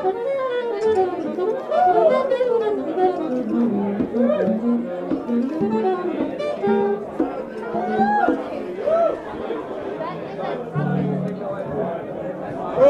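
Live jazz jam band playing: a melody line of swooping phrases that rise and fall about once a second over a line of short, low bass notes, with crowd chatter underneath.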